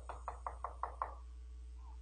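A hand knocking on the pulpit, a quick run of about six knocks in the first second, acting out trouble knocking at the door.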